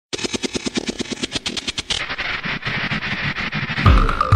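Electronic music opening with a fast, even drum roll of about a dozen hits a second that grows denser after about two seconds, building up until a beat with deep kicks comes in just before the end.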